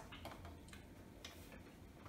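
Near silence with a few faint, short clicks from a person eating at a table, spread irregularly across the two seconds; the crispest comes just past the middle.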